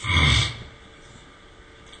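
A man coughing once: a single short, loud cough in the first half-second.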